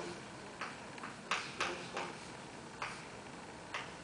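Chalk writing on a chalkboard, forming digits and plus-minus signs: about six short, sharp taps and strokes at uneven intervals.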